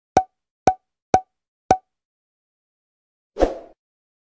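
Four short pop sound effects about half a second apart, each with a brief tone, then a short swish near the end: animated-outro sound effects.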